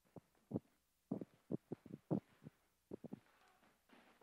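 About a dozen soft, low thuds at uneven intervals, from someone moving about on a stage and handling a bulky object.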